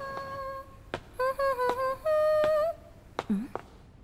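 A voice humming a short tune in high, held notes, with sharp clicks between the phrases. The longest and loudest note comes about two seconds in, and a brief low sliding sound follows near the end.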